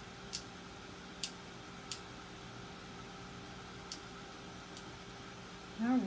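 A steady low hum with about five light, short ticks spread through it, from hands handling craft materials at a worktable.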